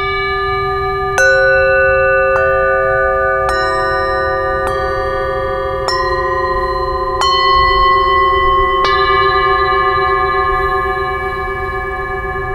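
Metal singing bowls struck one after another with a wooden mallet: about eight strikes a little over a second apart, each at a different pitch. The tones ring on and overlap, some with a slow wobble, and the last strike, near three-quarters of the way through, sustains to the end.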